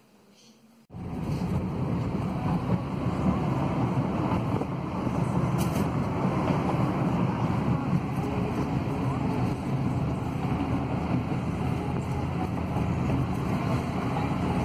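Steady road and engine noise inside a moving car's cabin, a dense low rumble that cuts in suddenly about a second in after a quiet moment.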